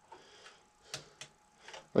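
A few faint, short clicks, about three spread over the second half, over a low hiss.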